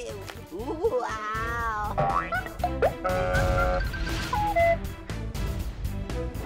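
Comic cartoon-style sound effects over background music with a steady beat: wobbling, springy gliding tones, a brief held chord and a short stepped falling run of notes.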